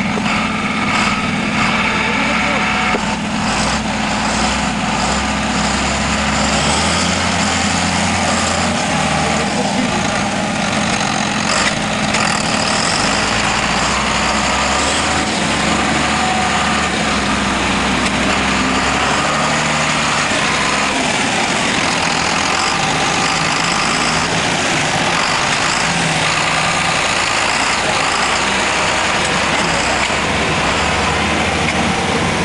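Big John Deere tractor's diesel engine running at low revs after a pull, its note shifting a few times, with voices in the background.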